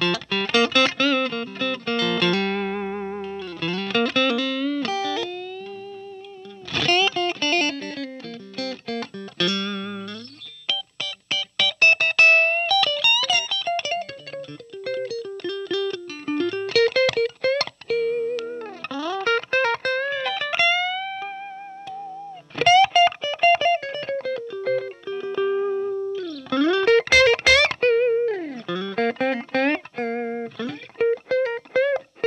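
Sandberg California DC Masterpiece Aged T-style electric guitar with single-coil pickups, played through a Marshall JCM800 amp on a clean tone: picked single-note lines and chords with string bends and vibrato.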